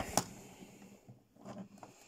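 Faint handling of a plastic G1 Transformers Sandstorm toy as its parts are moved: a light click just after the start, then soft rubbing and tapping of plastic.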